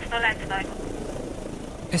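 Steady drone of a helicopter in flight, with a brief burst of speech at the very start.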